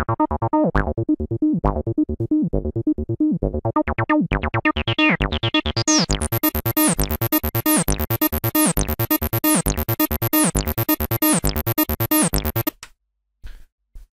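Cyclone Analogic TT-303 Bass Bot, a TB-303-style analogue bass synth, playing a sequenced acid bassline pattern of short repeated notes. From about four seconds in, the notes turn much brighter and buzzier as the filter is opened up, and the pattern stops about a second before the end.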